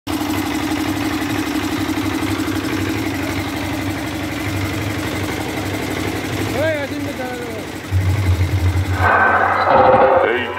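A steady, pulsing engine drone, then a deep low hum for about a second near the end, followed by a loud voice through the horn loudspeakers in the last second.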